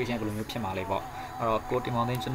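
A person's voice talking steadily.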